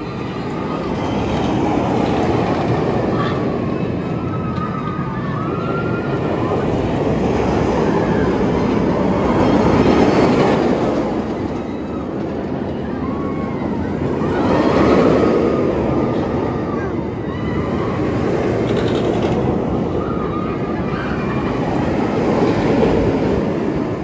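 B&M floorless roller coaster train running along its steel track: a continuous rumbling roar that swells twice, about ten seconds in and again around fifteen seconds.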